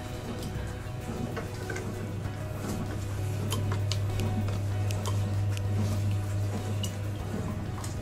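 Soft background music, with faint scattered clicks and small plops as cucumber slices are dropped one by one into a glass jar of pickle brine.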